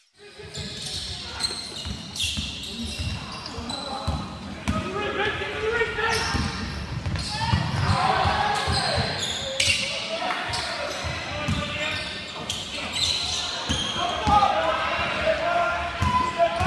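Live sound of a basketball game on a hardwood court: the ball bouncing and players moving, with scattered shouting voices, echoing in a large gym.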